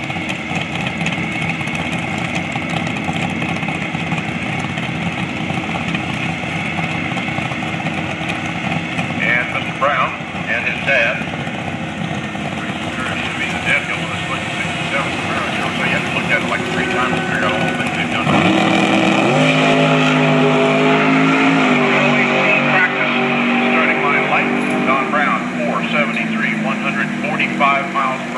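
Vehicle engines running. About two-thirds of the way through, one engine revs up quickly and holds a steady, louder, higher pitch until near the end.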